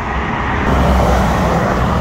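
Steady low rumble of vehicle noise, getting a little louder about half a second in.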